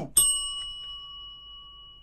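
A single bell ding, struck once just after the start and ringing on in a long, slowly fading tone.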